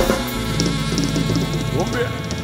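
Norteño cumbia band music with drum kit and bass playing a steady beat, a loud hit opening the passage.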